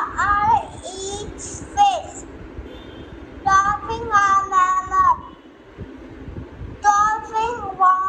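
A young boy singing in a high voice: short phrases of held notes with pauses between them.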